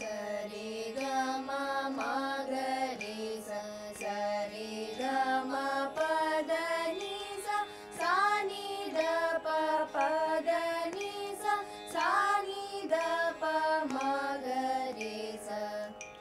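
Several young female voices singing in unison a Carnatic scale exercise (sarali varisai pattern) that steps up and down the scale, over a steady tanpura drone.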